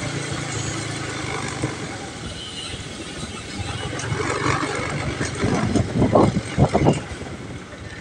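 A vehicle engine running steadily at low revs, heard as a constant low hum. Short bursts of people's voices come over it from about four to seven seconds in.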